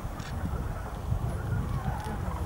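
Common cranes calling in flight from a flock overhead: faint, far-off trumpeting calls, a little clearer near the end, over a constant low rumble.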